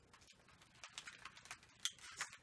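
Faint rustling and small clicks of over-ear headphones being picked up and handled, with one sharper click near the end.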